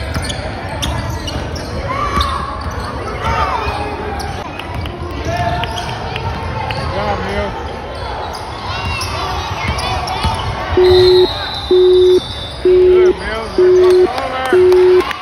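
A basketball dribbling on a hardwood gym floor amid players' and spectators' voices echoing in the hall. About three-quarters of the way in, a loud, low electronic beep starts repeating about once a second.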